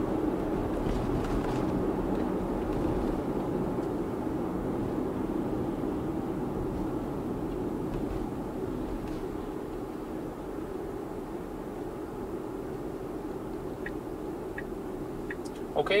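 Steady road and tyre noise inside an electric car's cabin, easing a little as the car slows.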